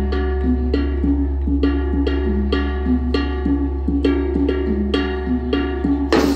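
Traditional Dayak dance music played on struck, ringing pitched percussion in a steady repeating pattern, about two to three strikes a second, over a steady low hum.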